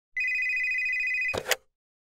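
A steady, high electronic ring lasting about a second, cut off by a short clatter.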